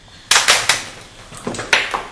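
Hits of a staged fist fight: three sharp smacks in quick succession, then a pause and two more near the end, the last the loudest.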